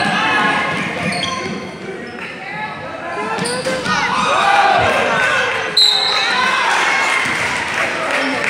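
Basketball bouncing on a gym's hardwood court during play, under several people shouting and calling out at once, loudest in the second half.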